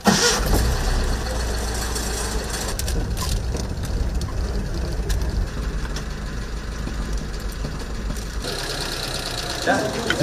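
Old Datsun 510 saloon's engine started with the key: it catches with a sudden burst right away and then idles with a steady low rumble. About eight seconds in, the engine sound drops away.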